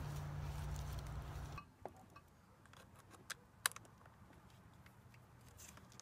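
Battery charger alligator clamps being clipped onto a scooter battery's terminals: a handful of sharp metallic clicks and snaps, the loudest about three and a half seconds in. For about the first second and a half a low outdoor rumble runs, then cuts off suddenly.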